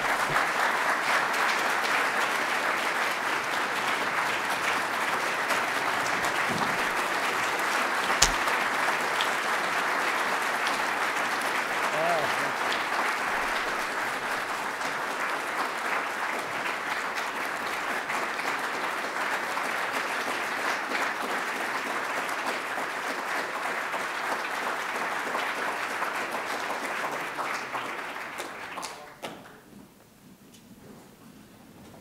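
Audience applauding steadily, dying away near the end, with one sharp knock about eight seconds in.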